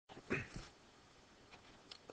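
Quiet room tone, with one short voice-like sound in the first half-second whose pitch falls.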